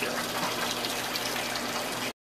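GE top-loading washing machine filling: a thin stream of fill water pouring into the drum with a steady splashing rush. The fill flow is weak, less water than the machine used to deliver, as the owner has noticed.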